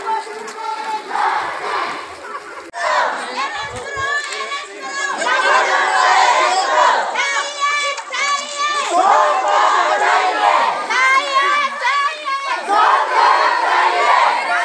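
Crowd of marching protesters shouting together, many high-pitched voices overlapping; the shouting grows louder and more unified about five seconds in.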